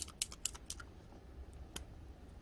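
Paint marker being shaken, its mixing ball clicking quickly inside the barrel in a run of sharp clicks through the first second, with one more click near the end.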